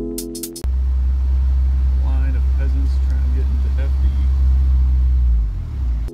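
Background music cuts off under a second in, giving way to the steady low drone of road and engine noise inside a moving car's cabin. Music comes back in at the end.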